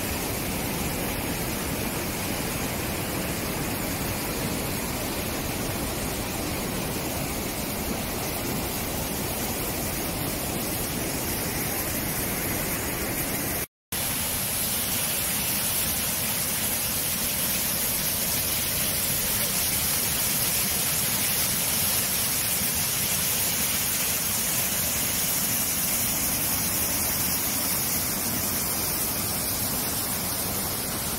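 Steady rush of whitewater tumbling between boulders. After a brief cut about halfway through, a different, hissier rush of water follows, from a jet of water discharging from a reservoir outlet.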